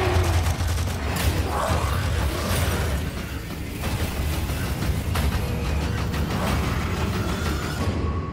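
Sci-fi movie trailer soundtrack: music mixed with action sound effects, a deep steady rumble underneath and several sharp hits along the way.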